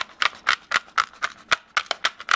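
Black pepper being dispensed over the dish: a run of sharp, even clicks, about four a second.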